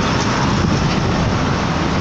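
Steady engine drone with road and wind noise inside a truck cab at highway speed.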